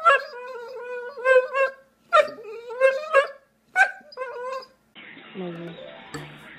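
A dog vocalizing in a string of long whining moans that rise and fall, broken by short gaps. About five seconds in, music with a beat starts.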